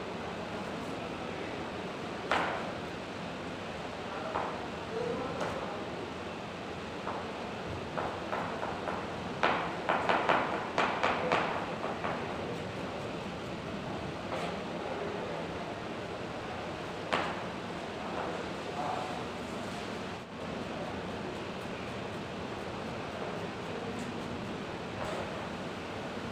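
Chef's knife cutting carrot into brunoise on a plastic chopping board: scattered single cuts, then a run of quick chopping strokes, about three a second, for a few seconds near the middle, over a steady room hiss.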